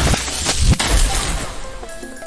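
Video slot game sound effects: crashing and glass-like shattering over the game's music, with a few sharp hits and a low boom in the first second, as a winning cluster of symbols breaks up.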